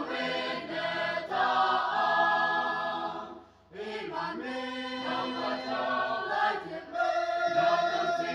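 Choir singing sustained phrases, with a short break between phrases about three and a half seconds in.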